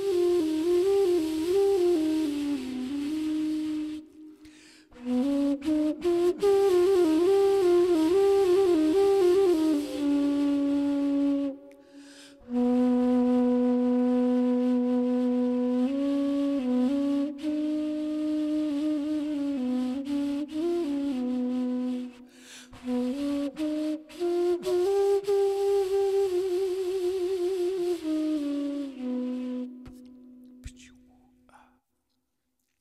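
Homemade flute cut from a Japanese knotweed (Fallopia japonica) stem, playing a slow improvised melody in phrases of held and rapidly wavering notes, with short breaks about four, twelve and twenty-two seconds in.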